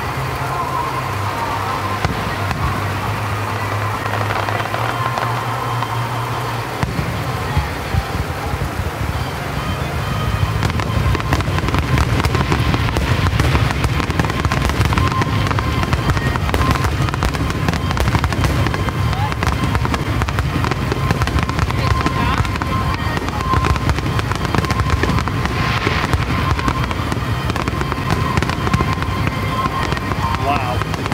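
Aerial fireworks display: rapid, overlapping bangs and crackles that grow denser and louder about ten seconds in as more shells burst at once.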